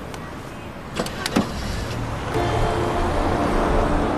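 A car door unlatched and swung open, with a few sharp clicks about a second in, then passing traffic on the street rising, under background music.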